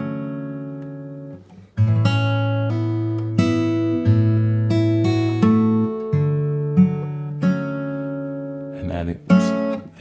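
Mayson MS7/S steel-string acoustic guitar in standard tuning, played fingerstyle: a chord rings out and fades, then a slow passage of plucked single notes over bass notes, each left to ring. A voice comes in near the end.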